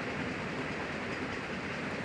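Steady background hiss of room noise picked up by the microphone, even throughout with no distinct events.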